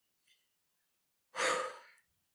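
A woman's short audible breath, a sigh, about one and a half seconds in, after a second of near silence.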